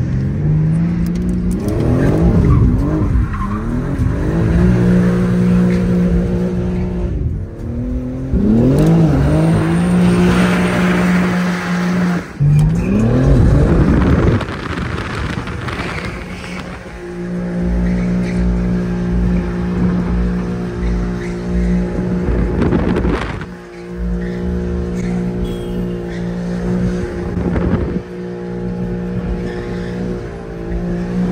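BMW G80 M3's twin-turbo straight-six heard from inside the cabin, revved hard in several pulls whose pitch climbs and drops over the first half. It then settles into a steady drone at constant revs.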